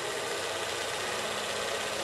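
Steady mechanical whirring and clatter of a film projector running.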